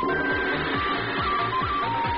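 Electronic background music: a fast, steady kick-drum beat, about four beats a second, under a simple synth melody.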